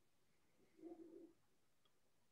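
Near silence, broken about a second in by one faint, short low hum lasting about half a second.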